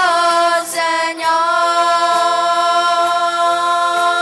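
Voices singing a hymn. A note slides down at the start, and after a brief break about a second in, a single long note is held.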